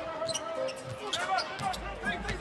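Basketball dribbled on a hardwood arena court, a run of sharp repeated bounces, over arena crowd noise.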